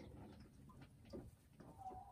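Near silence in a hen house: faint scattered rustles and ticks, with a faint steady tone starting near the end.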